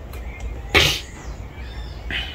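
A man sneezing once, a single short, sharp burst about three-quarters of a second in.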